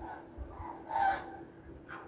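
A young child's short, animal-like vocal noise about a second in, over a faint steady hum.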